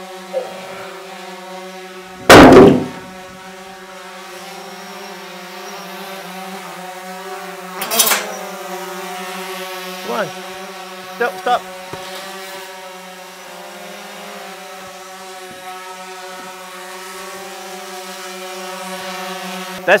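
Camera drone hovering overhead, its propellers making a steady even hum. A loud heavy thud comes about two seconds in and a sharper knock near eight seconds, as timbers are handled.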